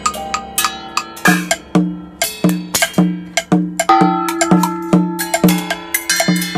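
Metal percussion, small gongs and metal bowls struck with sticks, in a free improvisation with piano. From about a second in, the strokes come in a steady pulse of roughly two a second, each one ringing on until the next.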